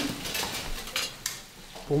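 Kitchen work: a few light clinks and knocks of utensils and cookware over a soft steady hiss.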